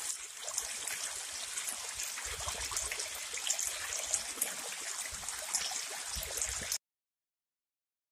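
Small rocky stream pouring over boulders into a pool: a steady splashing rush of water that cuts off suddenly about seven seconds in.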